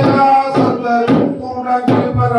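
Kalam pattu temple song: sung chant over drums struck in a steady rhythm about twice a second.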